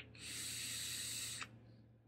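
Air drawn through an M-Atty rebuildable dripping atomizer with its airflow wide open: a steady hiss lasting about a second and a half.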